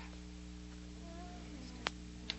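A few faint, high whimpering sounds from people crouched in cowering postures, voicing those postures on cue, over a steady low hum; a sharp click near the end.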